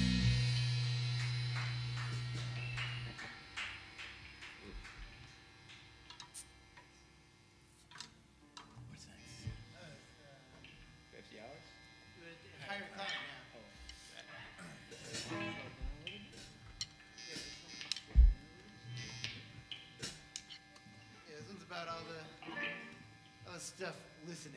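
The final chord of a rock song on electric guitar and bass ringing out and fading, with a held bass note cutting off about three seconds in. Then amplifier hum, quiet off-mic talk and small knocks of instruments being handled, with one sharp thump about three-quarters of the way through.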